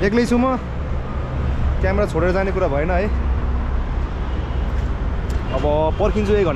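A man talking in short phrases over a steady low rumble of road traffic.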